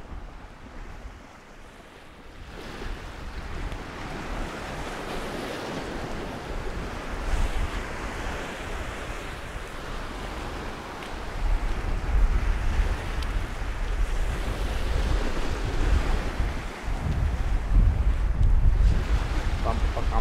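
Small sea waves breaking and washing up a sand-and-shingle shore, with wind buffeting the microphone. The wind rumble grows louder from about halfway through.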